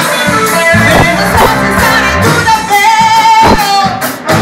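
Live band music: a woman sings through a microphone over acoustic and electric guitars and a drum kit.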